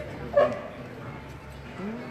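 A person's voice: a short loud vocal sound about half a second in, over low background voices, with a gliding vocal sound near the end.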